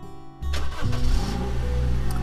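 Acoustic guitar music dies away, then about half a second in a vehicle engine starts and runs on with a steady low rumble.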